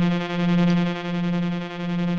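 Lyrebird West Coast Reaktor synthesizer sounding a low steady note that swells and fades about three times in two seconds. The envelope is retriggering itself in one-shot mode.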